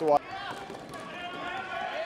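Faint murmur of voices and general noise in an indoor floorball hall, steady and well below the commentary level. A commentator's last word cuts off right at the start.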